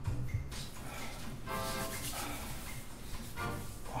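Film score music: sustained pitched tones over a low bass.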